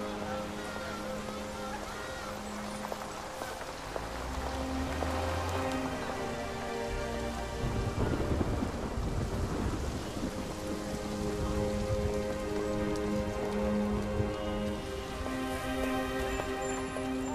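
Steady rain falling on a city street, with soft held notes of a film score over it. A deep low rumble builds up about halfway through.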